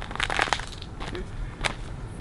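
Several short crunching noises: a quick cluster in the first half second, then single crunches about a second later and near the end.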